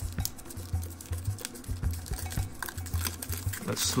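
Thin aluminium foil wrapper crinkling and crackling as it is peeled off a chocolate egg by hand, a run of small irregular crackles.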